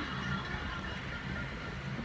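Low, steady background rumble with no other distinct sound.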